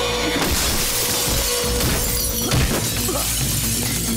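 Film action soundtrack: dramatic background score with a crash of shattering glass starting about half a second in, followed by sharp hits.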